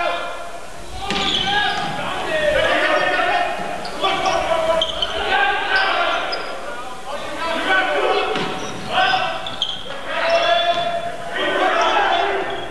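Indoor volleyball rally in a gymnasium: the ball is struck again and again, with players' voices and calls between the hits.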